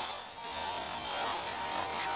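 A quiet, steady drone from a film trailer's soundtrack: a faint held hum over a light hiss, with no distinct hits or words.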